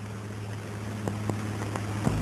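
Steady low hum and hiss of an old optical film soundtrack, with a couple of faint clicks about a second in.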